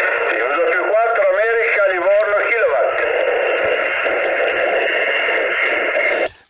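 A ham radio transceiver's speaker carrying a distant station's reply, a thin voice partly buried in band hiss, for about the first three seconds. After that only the receiver's steady hiss remains.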